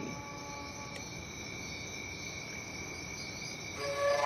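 A steady high-pitched insect trill, cricket-like, over a faint even hiss.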